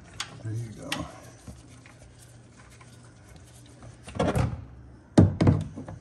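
Handling noise under a car during an oil drain: mostly quiet, then a short scrape about four seconds in and two heavy thunks about a second later.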